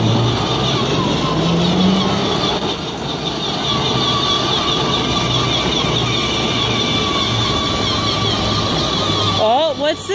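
Battery-powered ride-on toy quad running, its electric motor giving a steady, slightly wavering whine over the rumble of its plastic wheels on asphalt. A voice starts near the end.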